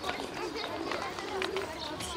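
Quiet background voices over a steady outdoor hum, with no clear sound from the stone being picked up.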